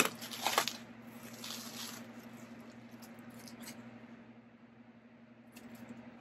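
Plastic bubble wrap crinkling and rustling in the hands as an item is unwrapped, in short bursts during the first two seconds, then only faint handling over a steady low hum.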